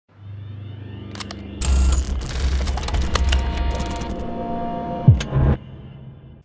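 A produced intro sting of sound effects: a low hum, then a loud dense clatter of clicks with a few held tones, ending in a sharp falling tone and a sudden cut-off about five and a half seconds in.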